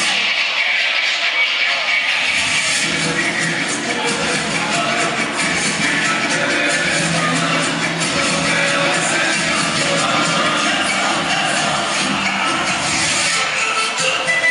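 Recorded saya dance music played for the dancers, with a steady percussion beat.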